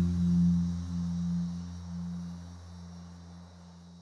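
Closing music: a low sustained note with overtones, struck just before, ringing on and fading away steadily.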